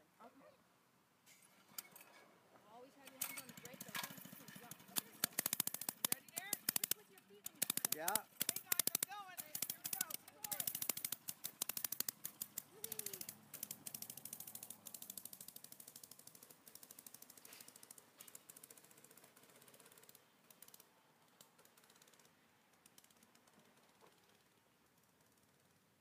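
Small single-cylinder mini bike engine catching about two seconds in and running with a rapid popping, loudest for the first several seconds, then fading away as the bike rides off.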